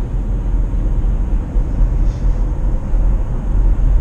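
Steady road and wind noise inside the cabin of a Mitsubishi Outlander PHEV at highway speed, running on electric power with its petrol engine not yet started.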